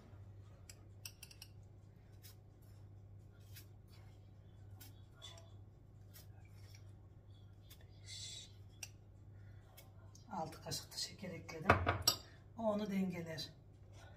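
Metal spoon clinking and scraping in a small ceramic cup while salt is scooped into a plastic mixing bowl: a scatter of light clicks, with a short hiss about eight seconds in. A low steady hum sits underneath.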